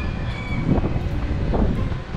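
Wind rumbling on the microphone over the noise of a small vehicle passing in the street.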